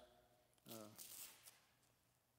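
Faint rustling of a knee-wrap strap being handled and unrolled, lasting about half a second, about a second in.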